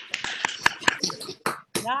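Scattered, irregular hand claps from a few people over a video call, mixed with short bits of cheering voices, as a placing is announced.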